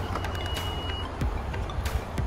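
2019 Honda CR-V power tailgate starting to close after its button is pressed: one high warning beep lasting under a second, over a low rumble.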